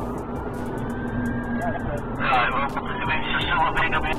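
Police Volkswagen Golf R's engine running hard in pursuit, heard from inside the cabin as a steady drone. A faint siren tone rises, holds and falls away, and a man's voice comes in from about halfway through.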